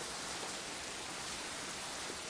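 Heavy rain falling, a steady even hiss with no breaks.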